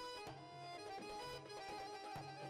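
Live Egyptian ensemble music for belly dance: accordion and violin playing the melody over hand-drum strokes.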